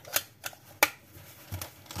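Two sharp plastic clicks, a little under a second apart, from the battery box of an electric heated glove being handled and put back together, the second click the louder.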